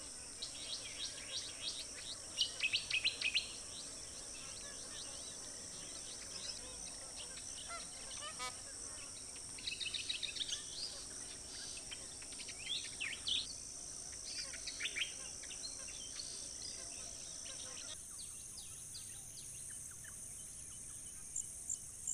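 A steady, high-pitched insect drone with clusters of short, high bird chirps, loudest a couple of seconds in and again around ten seconds. The background drone changes abruptly about eighteen seconds in.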